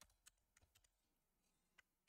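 Near silence: faint room tone with a few isolated, faint computer clicks, one near the start, one a quarter second in and one near the end.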